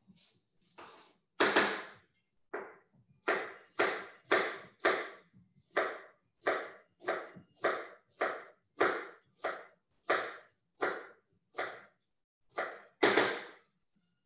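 Kitchen knife cutting through vegetables on a cutting board: about twenty steady, evenly paced strokes, roughly one every half second or so, with louder strokes near the start and near the end.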